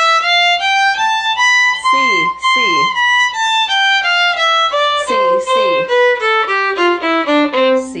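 Violin playing a two-octave C major scale in single bowed notes, climbing to the top C about two seconds in and stepping back down to the low C near the end. A voice calls out "C" as the tonic comes round.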